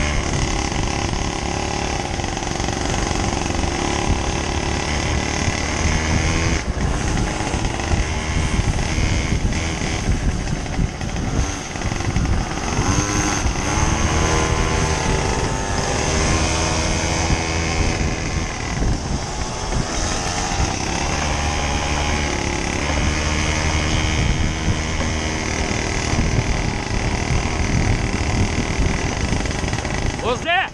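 Small motorcycle engine running steadily while riding along a dirt track. Its pitch wavers up and down around the middle as the speed changes.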